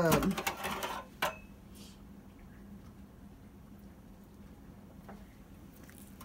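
A knife scraping and clicking against the duck and the metal wire rack of a roasting pan during the first second or so, with one sharp click that rings briefly. After that there is only a faint steady hum.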